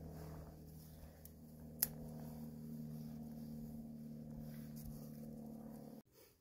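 Low, steady drone of a distant engine, with a single sharp snap about two seconds in as a dry stick is broken to build up a small campfire.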